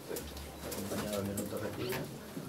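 Low murmur of voices in a small room, with several brief camera shutter clicks.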